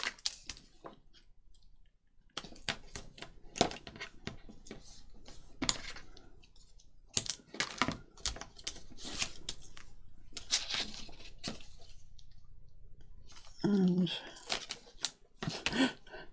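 Double-sided tape being pulled off its roll, torn and pressed onto paper: an irregular run of sharp crackles and ticks, with paper being handled.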